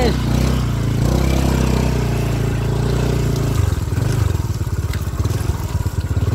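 Small motorcycle engine running steadily at low revs. The revs dip and pick up again a little over halfway through.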